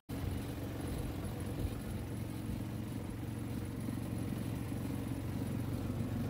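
Golf cart driving along, heard from on board: a steady drone of motor and tyres with a low hum underneath.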